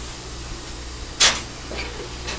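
Steel diamond-plate floor hatch in a steam locomotive's cab being pulled open over the grate-shaker levers, with one sharp metallic clank a little over a second in. A steady low hum and hiss run underneath.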